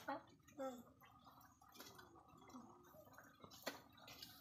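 Near silence: faint voices in the background, with one short click near the end.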